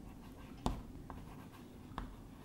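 Chalk writing on a blackboard, faint, with a sharp tap about two-thirds of a second in and a lighter one about a second in.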